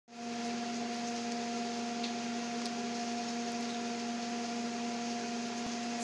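A steady hum of several even tones with a hiss behind it, unchanging throughout, with a couple of faint ticks.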